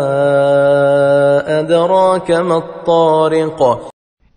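A man chanting Quranic recitation in Arabic (tajwid). He holds one long steady note for about the first second and a half, then moves through shorter wavering melodic turns before stopping just before the end.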